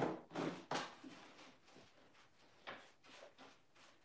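Light handling noises at the worktable as a lid of paint mixture is worked: a few short scrapes and taps, most of them in the first second, with one more about three seconds in.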